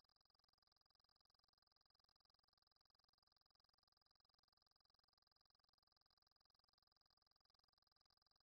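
Near silence: the recording is essentially muted between spoken sentences.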